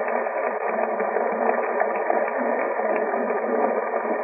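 Audience applauding, a dense spatter of many hands clapping, heard through a muffled, narrow-band old recording.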